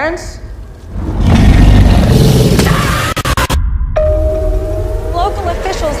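Movie-trailer sound design: a loud, low rumbling swell about a second in that holds for two seconds, then a brief silence. After it comes a new passage of music over a sustained tone.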